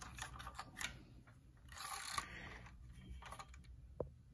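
Faint clicks and light rustling of hands handling a 1:24 scale model Range Rover car, turning it and setting it down.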